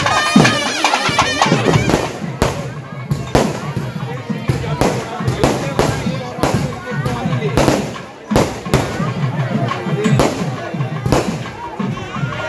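Fireworks: aerial shells bursting in an irregular string of sharp bangs, starting about two seconds in, after music in the first second or so.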